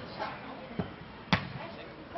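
A Faustball hit by players' arms during a rally: two short smacks, a softer one a little before halfway and a sharp, loud one later on.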